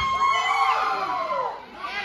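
Small live audience shouting and cheering, many voices yelling over one another, with some high-pitched children's shouts among them.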